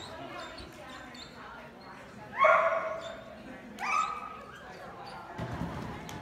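A dog barking twice, about a second and a half apart, the first bark the louder.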